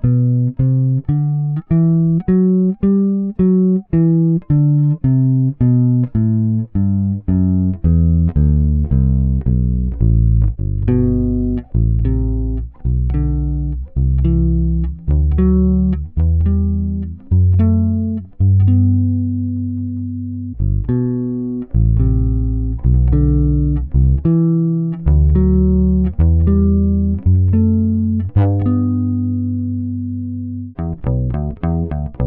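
Single-coil '51-style Fender Precision bass with flatwound strings, played fingerstyle and recorded straight DI: a riff of plucked bass notes, each dying away quickly, with a few longer held notes. The riff is played on a Seymour Duncan Quarter Pounder pickup and on a Lollar Original pickup in turn.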